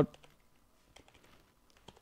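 Faint computer keyboard typing: a handful of light, separate key clicks as a word is typed into a text field.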